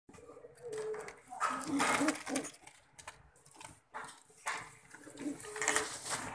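Domestic pigeons cooing in short low calls, with bursts of rustling close to the microphone.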